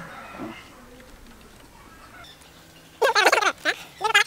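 Fairly quiet stretch, then about three seconds in a man's voice, loud and brief with a bending pitch, lasting under a second.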